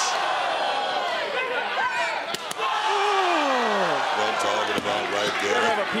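Sharp cracks of a kendo stick striking a wrestler: one at the start and two in quick succession about two and a half seconds in, over steady arena crowd noise. A long voice falling in pitch follows the second pair of hits.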